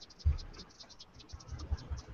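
Felt-tip marker scratching across paper in quick, repeated hatching strokes, with a couple of dull low thumps.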